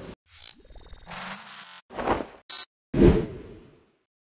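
Logo sting made of sound effects: a whoosh with faint high tones, a sharp hit about two seconds in, a brief high swish, then a deep boom about three seconds in that fades away.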